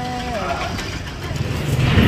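A voice trails off, leaving a low, steady engine-like rumble that grows louder near the end.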